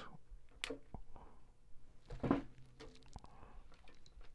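Faint clicks and handling sounds of guitar strings being trimmed at the headstock with side cutters, with one sharp snip under a second in.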